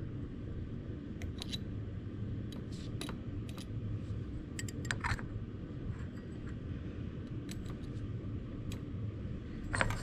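Faint, scattered light clicks and taps of metal forceps on a glass beaker and glass test tubes as potato pieces are picked out and dropped into the tubes, over a steady low background hum.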